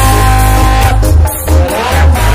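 Loud live band music through a PA system, with heavy bass and a long held note through the first second.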